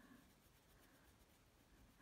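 Near silence with a very faint coloured pencil scratching on paper as it shades.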